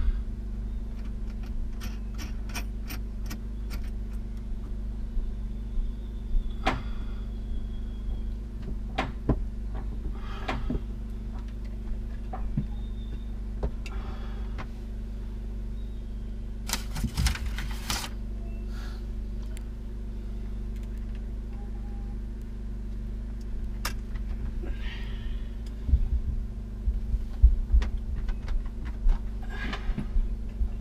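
Scattered clicks and metal rattles of battery cables, terminals and tools being handled during wiring, over a steady low hum. A burst of clatter comes a bit past halfway, and a run of louder knocks near the end.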